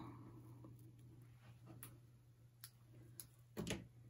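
Near silence with a few faint, isolated clicks and taps from small craft scissors snipping washi tape and handling paper pieces, and a slightly louder tap near the end.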